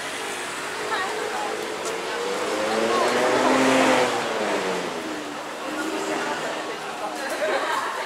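A motor vehicle passing close by on the street, its engine rising in pitch and then falling again, loudest about halfway through, over people talking in the street.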